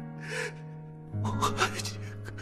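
A woman sobbing with gasping breaths, one about half a second in and a louder run in the second half, over sustained notes of background music.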